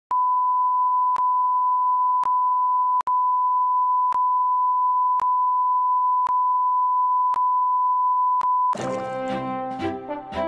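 A steady electronic beep tone at one pitch, held for about eight and a half seconds, with a faint tick about once a second and a brief break about three seconds in. Near the end it cuts to music, brass-led in the moments after.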